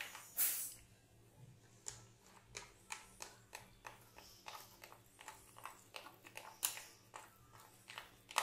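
A spoon stirring thick gram-flour batter in a glass bowl: faint, irregular scrapes and soft clicks against the glass, with a few louder strokes.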